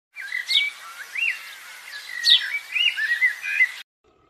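Birdsong: a string of whistled chirps and calls, with two sharp high notes falling in pitch about half a second and two and a quarter seconds in. It cuts off abruptly just before the end.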